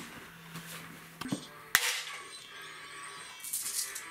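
Glass marbles clicking against each other and a small tin as they are gathered up off the floor: a couple of sharp clacks, then a quick run of light clicks near the end.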